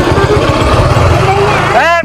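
Small motor scooter engines idling close by: a steady, fast low putter.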